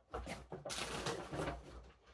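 Brown paper takeout bag rustling and crinkling as a hand rummages in it and moves it.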